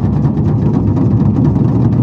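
Large Chinese barrel drums played together in a fast, continuous roll: a loud, dense rumble of rapid strokes.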